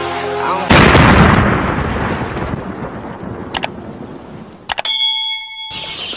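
An explosion sound effect: a sudden loud blast under a second in that rumbles away over the next few seconds. Near the end come a few sharp clicks and a short bright ding.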